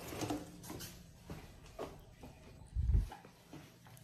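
Quiet handling sounds: scattered light clicks and knocks as a room light switch is flipped on and the phone is moved about, with a louder dull thump about three seconds in.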